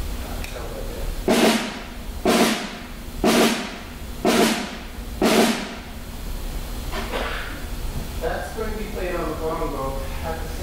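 Snare drum played as a drag, a main stroke led by two quick grace notes, struck five times at an even pace of about one a second.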